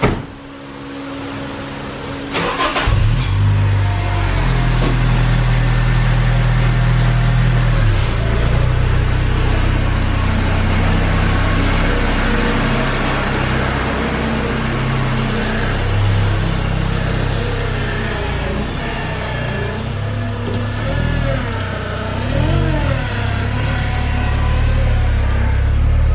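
Acura RSX (DC5) four-cylinder engine starting about two and a half seconds in. It runs at a raised idle for a few seconds, then settles lower and keeps running as the car is backed out, with some brief changes in engine note near the end.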